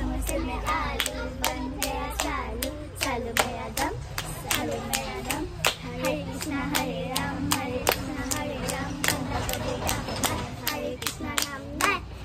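Children's hand-clapping game: quick, even hand claps, about three a second, as the girls clap their own and each other's palms, with young girls' voices chanting a clapping rhyme over them.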